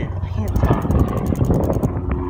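Bicycle freewheel ratchet ticking rapidly and evenly as the crank is turned backward to spin the freshly sprayed chain, over low wind rumble on the microphone.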